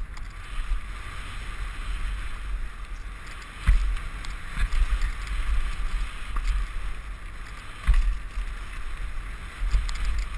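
Mountain bike tyres rolling fast over a dirt trail with heavy wind buffeting on the microphone, and two sharp knocks from the bike about four and eight seconds in as it hits bumps.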